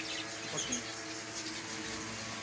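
Small caged finches chirping, a few faint, short, high calls over a steady background hum.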